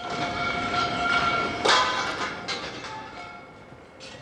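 A steady high whine with overtones, then a single sharp bang just under two seconds in, followed by a few fainter cracks as the sound dies away.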